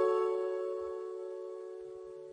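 Theme music: a piano chord, struck just before, left ringing and slowly fading away.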